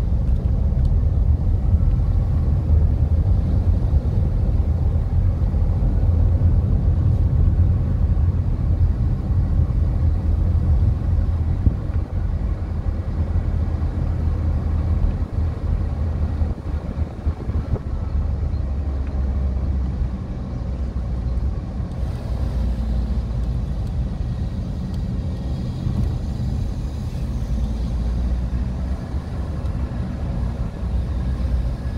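Inside a moving car: a steady low rumble of engine and road noise, with a little more hiss in the second half.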